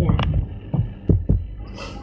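Several dull, low thumps in quick succession, about five in the first second and a half, then a short breath-like hiss near the end.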